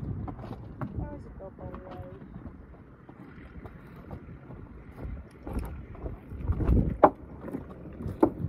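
A person's footsteps and a horse's hooves knocking on a wooden plank bridge, a few sharp knocks in the second half, the loudest about seven seconds in, with wind on the microphone.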